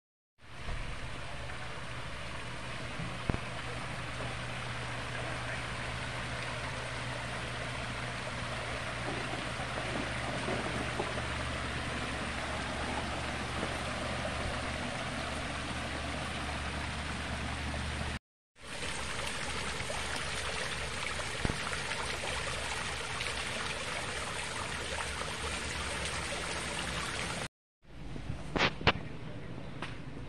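Water splashing and trickling steadily from a landscaped garden water feature, spilling over rocks and out of bubbling urns and basins. The sound is broken by two short cuts, and near the end it gives way to a few sharp clicks.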